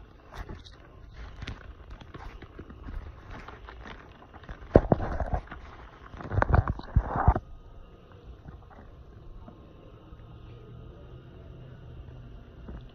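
Handling noise from a phone being moved around by hand: rubbing and clicks on the microphone, with loud knocks about five seconds in and again around six to seven seconds in.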